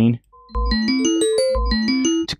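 Software electric piano (MSoundFactory instrument) playing a fast rising arpeggio of short notes, with a deep note at the start of each run. The run starts over about a second later.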